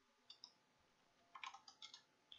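Faint keystrokes on a computer keyboard: two taps, then a quick run of about half a dozen about one and a half seconds in.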